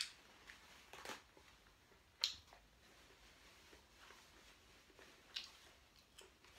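Mostly near silence with a few short, sharp clicks and rustles from a person eating at a table, the loudest about two seconds in. A sheet is torn from a paper roll at the start.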